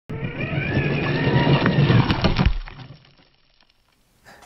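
Electric motor of a 1/16 scale RC monster truck whining as it drives over gravel, with tyre crunch and a couple of sharp clicks from stones; it fades out after about two and a half seconds.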